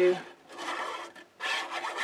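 Nib of a liquid glue bottle scraping along cardstock as a line of glue is drawn: a dry, scratchy rubbing in two strokes.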